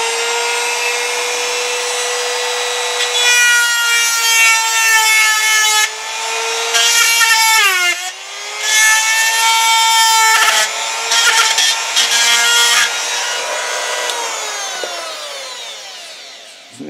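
Handheld rotary tool with a hard rubber abrasive grinding point running at a steady high whine, with several stretches of grinding as the point bears on the end of a motor shaft bearing. The pitch dips under load about halfway through. Near the end the tool winds down, its whine falling. The grinding cones out the bearing's mushroomed end, which had kept the shaft from slipping back in.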